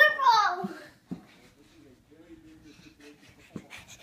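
A girl's short, high-pitched shout that falls in pitch, followed by a thump about a second in and then faint voices.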